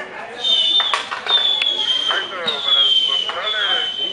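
Emergency vehicle siren sounding a high-pitched tone that falls slightly and repeats about once a second, with a couple of sharp pops about a second in.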